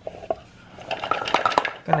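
Plastic food processor bowl full of chopped cassava being handled: a couple of light knocks, then a quick run of clattering knocks about a second in.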